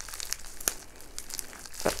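Thin plastic packaging bag crinkling as fingers fold and squeeze it, with irregular sharp crackles, two of them louder, one less than a second in and one near the end.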